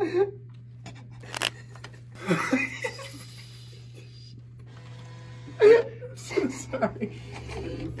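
People's voices and short bursts of stifled laughter over a steady low hum, with one sharp click about a second and a half in.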